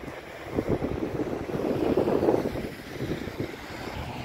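Wind buffeting the camera microphone, a ragged rumble that swells to its loudest about halfway through and then eases.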